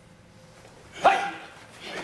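Sharp karate kiai shout about a second in, sudden and loud with a slight fall in pitch, followed by a shorter second shout near the end as the fast block-and-punch counter lands.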